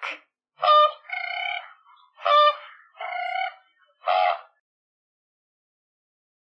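A bird's honking calls played as a sound effect: five nasal calls at a steady pitch in about four seconds, alternating short and longer ones, then nothing.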